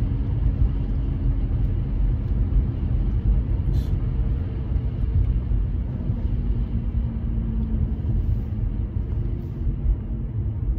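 Car cabin noise while driving: a steady low rumble of road and engine noise heard from inside the car.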